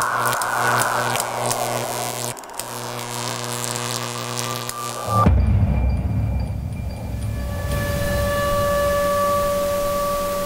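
Soundtrack of a video clip playing: dark, drone-like ambient music with held notes. About five seconds in it changes abruptly to a deep rumble under long sustained high tones.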